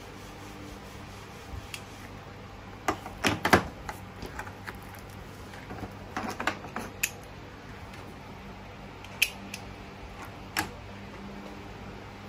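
Scattered clicks and knocks as hands handle plastic e-bike control levers and cables on a workbench, loudest in a short cluster about three seconds in, over a low steady hum.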